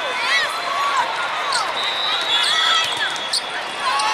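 Athletic shoes squeaking repeatedly on a sport-court floor as volleyball players move during a rally, over constant voices in a large, echoing hall.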